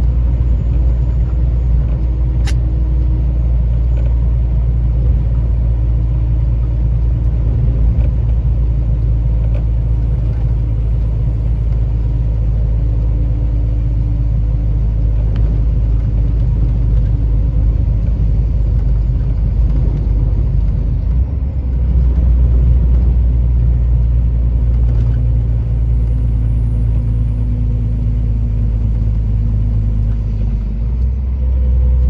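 Steady low engine drone and road rumble heard from inside a truck's cab at highway cruising speed, with a single click about two seconds in and a short dip followed by a louder stretch about two-thirds of the way through.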